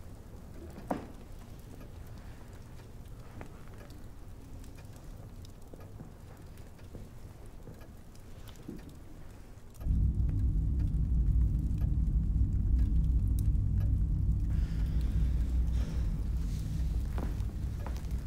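Horror-film sound design: a quiet low ambience with scattered faint ticks, then about ten seconds in a loud, deep rumbling drone comes in suddenly and holds.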